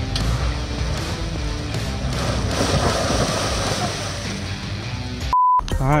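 Range Rover SUV reversing slowly through trail mud: a steady rush of engine and tyre noise that swells in the middle, under background music. Near the end the sound drops out briefly behind a short pure beep.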